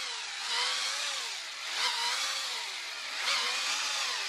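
Handheld electric drill running a spiral mixing paddle through a bucket of thick, crystallising honey, its motor pitch wavering up and down as it is worked through the honey.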